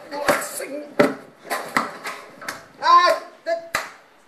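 Soundtrack of a promotional video played over a room's loudspeakers: voices that are not picked up as words, broken by several sharp knocks or slaps.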